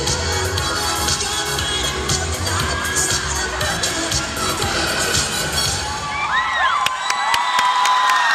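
Crowd cheering and children shouting over loud hip hop dance music with a steady bass beat. About six seconds in the beat stops and the cheering rises with high-pitched shouts sliding up and down.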